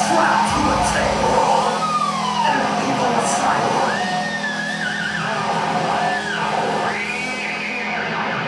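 Thrash metal band playing live in a sparse passage: a held low note runs under high lines that bend up and down, with only a few cymbal strokes in the first few seconds.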